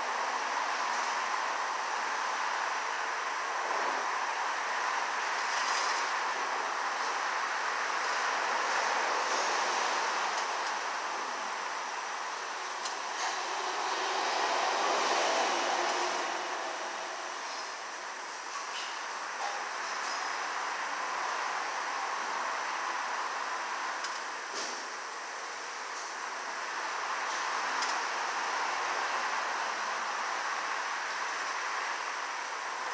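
Steady hiss of auto-shop background noise that swells and eases slowly, loudest about halfway through, with a few faint clicks.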